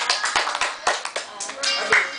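Scattered, uneven hand clapping from a few people, with voices behind it.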